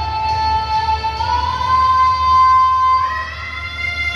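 A girl singing a long high note into a microphone that slides up and then holds, over a rock ballad backing track with guitar.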